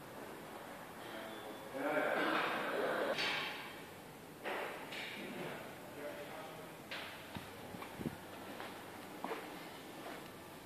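A short stretch of indistinct voice about two seconds in, followed by a few scattered light clicks and knocks.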